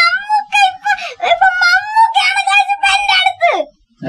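A young boy wailing in a high, drawn-out cry broken into short pulls. It drops steeply in pitch and cuts off just before the end.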